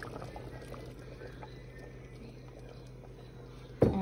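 A pot of soup simmering on the stove: faint soft bubbling over a low steady hum, fading slightly.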